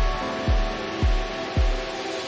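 Calm instrumental relaxation music: lingering, slowly fading ringing tones over a soft low beat about twice a second.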